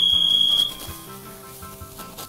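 A single high, steady electronic beep lasting under a second, signalling the start of a one-minute timed contest, then light background music.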